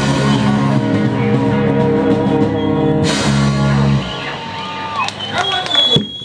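Live rock band with electric guitars playing loudly, the song ending abruptly about four seconds in. After it come scattered shouts and voices.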